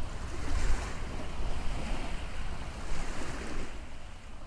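Steady rushing of sea water and waves, with wind buffeting the microphone and a low rumble, easing slightly near the end.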